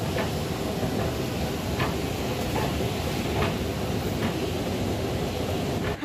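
Escalator running while being ridden down: a steady mechanical clatter with a few faint clicks.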